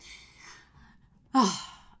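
A woman's breathy sigh, followed about a second and a half later by a short spoken "uh" that falls in pitch.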